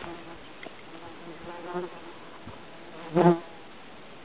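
A flying insect buzzing near the microphone, its wavering drone fading in and out. It swells loudly for a moment about three seconds in as it passes close.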